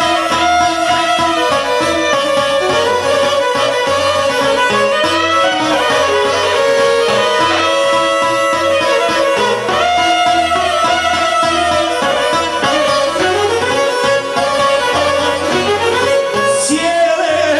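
Bosnian izvorna folk music, an instrumental passage with a violin lead over plucked strings and a steady bass beat.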